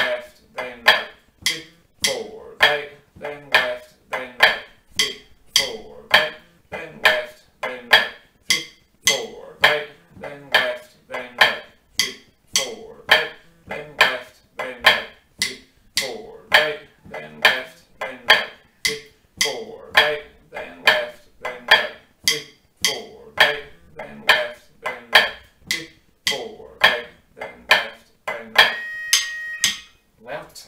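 Drumsticks striking a pipe band snare practice pad, playing flams each followed by a tap on the same hand (right, then left, then right) in a steady 3/4 march rhythm.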